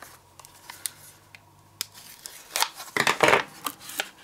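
Scissors cutting the tape that holds a cardboard false-lash box shut: a few light clicks, then a louder cut and rustle of the box about three seconds in.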